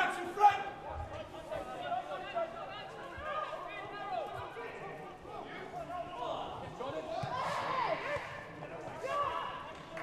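Footballers shouting to each other on the pitch, their calls carrying across a near-empty stadium, with a few sharp thuds of the ball being kicked near the start.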